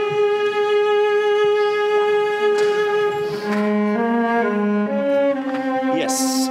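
Chamber-orchestra string section, violins and cellos, playing a slow passage in rehearsal. It is the passage the conductor has asked to hear again, just quieter. One long note is held for about three and a half seconds, then the parts move through several shorter notes.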